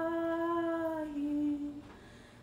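A voice humming long, held notes: one note for about a second, then a step down to a lower note that fades out near the end.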